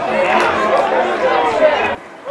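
Several voices shouting and talking over one another, cutting off abruptly at the end.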